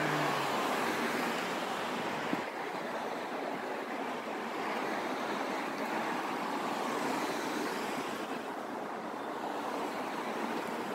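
City street traffic: cars passing close by, a steady rush of tyres and engines that swells gently as vehicles go by, with one short click about two and a half seconds in.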